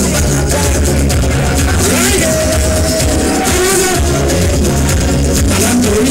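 Live calypso music with a steady, driving beat and a heavy bass, and a man singing into a microphone, holding one long line about two seconds in.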